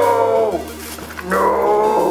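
A man's drawn-out, wailing "Nooo!", twice, each cry falling in pitch.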